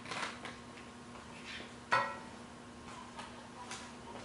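A utensil clinking against a metal frying pan on the stove: a few scattered clinks, the loudest one ringing briefly about two seconds in.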